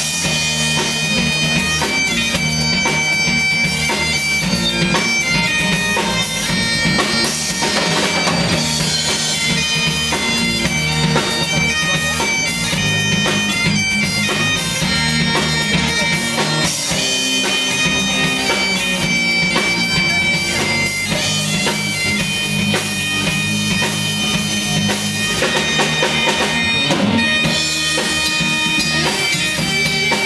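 Scottish bagpipes playing a tune over their steady drones, backed by electric guitar and a rock drum kit, in a live band performance.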